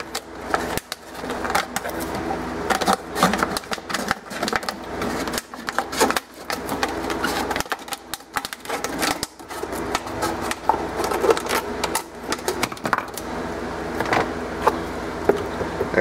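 Scissors cutting around a plastic two-liter soda bottle: a long, irregular run of short, sharp snips and crackles of the thin plastic.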